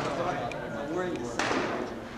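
Voices talking in a large echoing hall, with one sharp crack about one and a half seconds in: a rattan practice sword landing a blow on a shield or armour.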